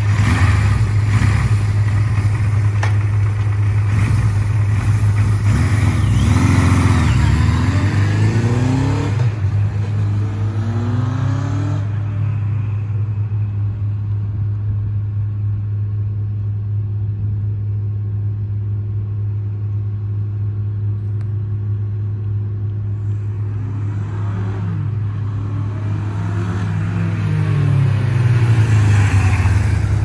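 1979 Suzuki GS750's air-cooled inline-four running through its original exhaust. It is revved up and down several times over the first dozen seconds, then falls quieter as the bike rides away, and grows louder again near the end as it accelerates back.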